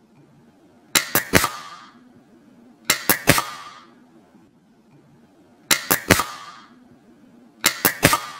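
Polarstar F2 HPA airsoft engine cycling in open-bolt mode four times, about two seconds apart: each shot is a quick triple click of the solenoids and nozzle, followed by a short hiss of air.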